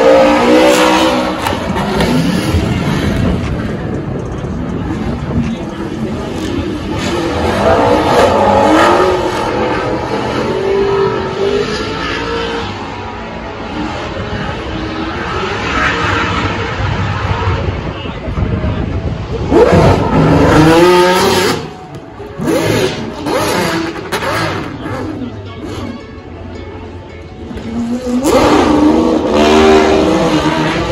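Drift cars' engines revving hard, rising and falling in pitch, as the cars slide through a corner, with the loudest passes about two-thirds of the way through and near the end.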